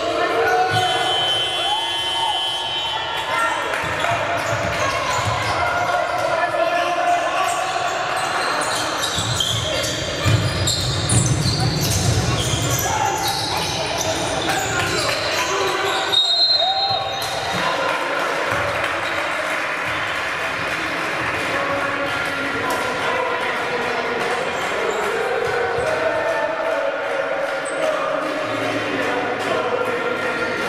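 Live basketball game sound in a large hall: a ball bouncing on the hardwood court amid players' shouts and voices, echoing in the sparsely filled arena.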